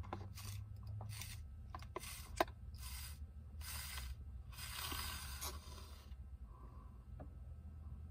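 Slushie being sucked up through a plastic straw: a run of short slurping draws, the longest about five seconds in, with a sharp click near two and a half seconds. A low steady hum runs underneath.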